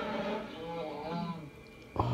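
Film soundtrack heard through a television's speaker: music with held notes that shift in pitch, dropping quieter shortly before the end.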